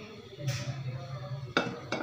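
Non-stick frying pan being handled on a metal stove top while oil is spread in it: a short scrape about half a second in and a sharp knock of the pan about a second and a half in, over a steady low hum.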